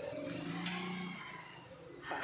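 A single sharp metal clink about two-thirds of a second in, as a lifting clamp is worked onto a stack of steel sheets, over a faint low hum that dies away about a second in.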